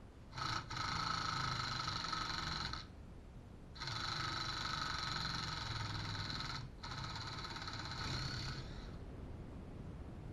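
Cordless impact gun running three times, a steady high motor whine of two to three seconds each with short breaks between, as bolts on top of a Mercury V8 outboard are driven.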